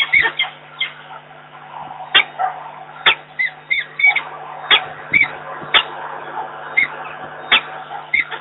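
A peregrine falcon calling to its mate: a quick series of short, sharp calls, about two a second.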